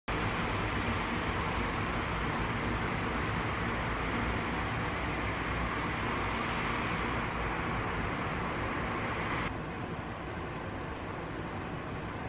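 Steady hiss of background noise with no distinct events, dropping suddenly to a quieter, duller hiss about nine and a half seconds in.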